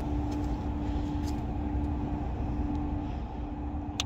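Steady low rumble of street traffic with a steady engine hum that fades out about three seconds in.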